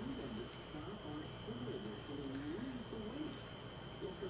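Low, wavering cooing calls repeating throughout, like a pigeon or dove cooing.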